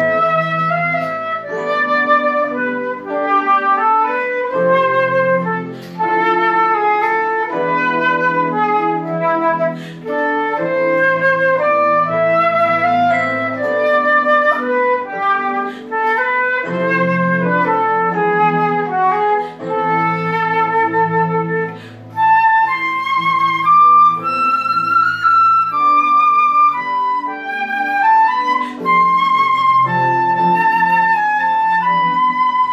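Flute and electronic keyboard duet: a concert flute plays a stepwise melody in phrases over sustained keyboard chords.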